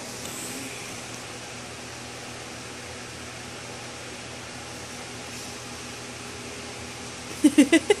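Steady background hum of the room, then a person laughs in several quick bursts near the end.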